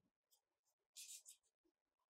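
Near silence, with a faint scratchy rustle about a second in as a metal crochet hook is drawn through yarn and the yarn is handled.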